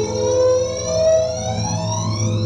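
Digitally effected clip audio from a render-effect edit: a stack of tones sliding steadily upward in pitch over steady low droning tones, sounding like an electronic siren.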